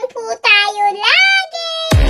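A high-pitched voice singing wordlessly in drawn-out notes that slide up and down, ending on one steady held note near the end.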